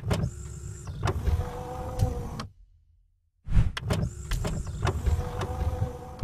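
A whirring, clicking mechanical sliding sound effect for an animated logo, played twice. Each run starts with a sharp hit, lasts about two and a half seconds, and cuts off suddenly, with about a second of silence in between.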